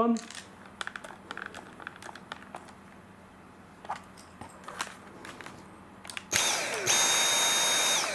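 Small clicks and plastic handling as the screw is driven home, then about six seconds in the Dyson V7's motor starts with a high, steady whine and a rush of air, stepping up louder a moment later. It is running on the freshly fitted replacement battery and begins to die away at the very end.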